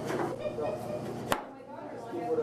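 Knife chopping on a cutting board: a few sharp knocks, the loudest a little over a second in.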